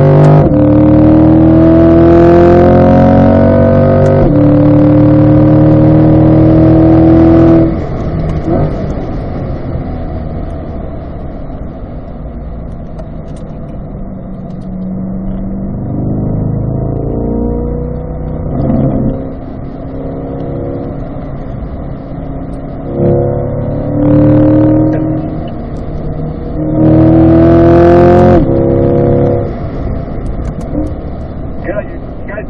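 A 2020 Corvette C8's 6.2-litre V8, heard from inside the cabin, pulling hard with its note rising for about the first seven seconds, then dropping away suddenly as the throttle comes off for a corner. Further on it comes back on power in several short rising pulls, shifting up through the gears near the end.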